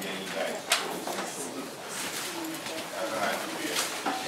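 Indistinct, murmured speech, with a single sharp click a little under a second in.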